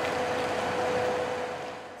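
A machine running: a steady hum with one constant mid-pitched tone, easing off near the end.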